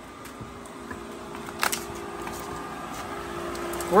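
Pool pump motor running at full pressure, a steady hum growing gradually louder; a single sharp click about one and a half seconds in.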